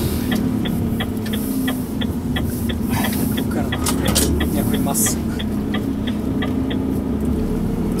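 Renault T 460 truck's six-cylinder diesel engine running steadily while under way, heard inside the cab over a low road rumble. A light ticking repeats about three times a second throughout.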